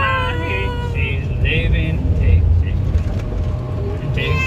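Car driving on a wet highway, heard from inside the cabin: a steady low rumble of road and engine noise. High voices chatter over it for the first couple of seconds.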